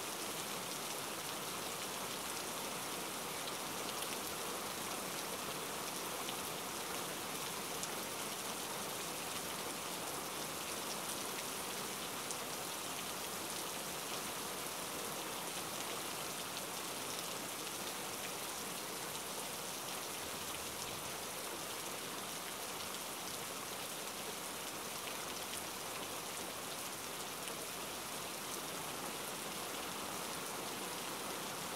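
Steady rain falling, an even hiss with faint scattered drop ticks, unchanging throughout.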